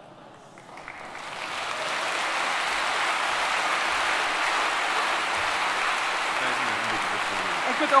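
Audience applause that builds up over the first couple of seconds and then holds steady.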